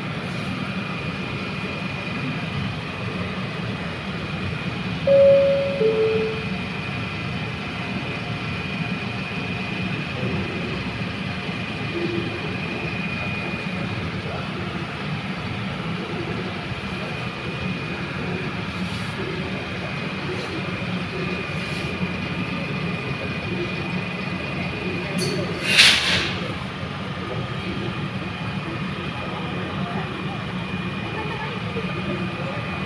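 Steady rumble of an elevated train station's surroundings with a faint high steady whine, broken about five seconds in by two short falling tones and, near the end, by a brief loud burst of hiss.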